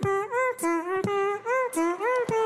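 A man's voice humming a simple tune in held notes while a beatboxed drum beat of sharp mouth clicks and thumps runs under it at the same time. It is one ventriloquist doing both parts at once.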